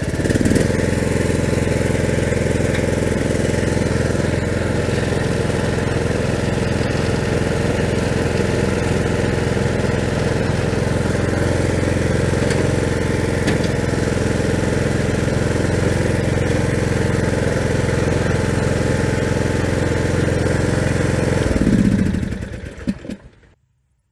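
Troy-Bilt Pony riding tractor's engine, just started, running steadily on a test run after both transmission drive belts were replaced. About 22 seconds in it is shut off and winds down to a stop.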